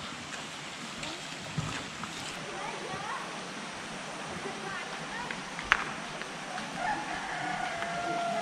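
Outdoor ambience at a hot-spring pool: a steady wash of water with faint distant voices of bathers, and a single sharp click about six seconds in.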